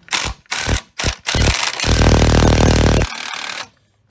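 Cordless impact wrench with a 7 mm Allen socket loosening the lower brake caliper bolt. It gives a few short trigger bursts, then hammers steadily for about two seconds as the bolt breaks loose, then runs on more quietly briefly and stops.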